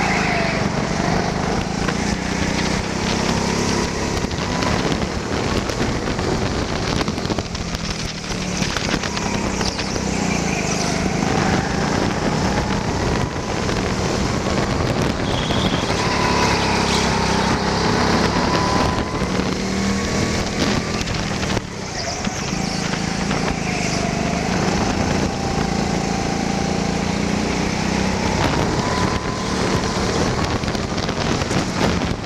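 Rental go-kart running hard around a track, heard from onboard: its drive note rises and falls repeatedly as the kart accelerates and slows, over a steady hum and a haze of running noise.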